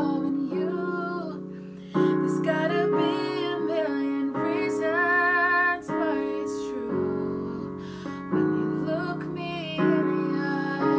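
A woman singing a slow love song while accompanying herself on a Yamaha electric keyboard in its piano sound, with new chords struck every second or two.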